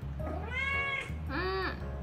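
A cat meowing twice in quick succession. Each call rises and falls in pitch, and the second is shorter.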